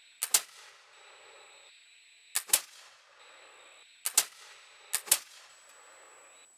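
Sharp metallic clicks in close pairs, four times over about five seconds: the lock of a flintlock fusil being worked.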